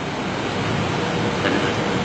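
A steady rumbling noise with hiss, fairly loud, with a faint steady tone joining about a second in.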